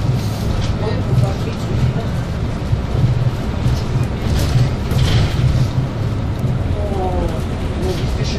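City bus driving along a street, heard from inside the passenger cabin: a steady low engine and road rumble.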